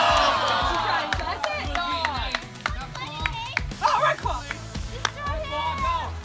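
A crowd of onlookers shouting and cheering, many voices at once, loudest in the first two seconds and thinning to scattered calls. Background music with a steady beat runs underneath.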